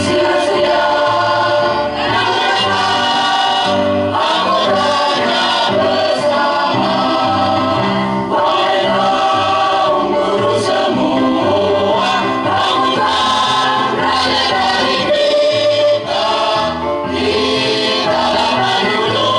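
Choir of men and women singing together over a low instrumental accompaniment, continuous and full throughout.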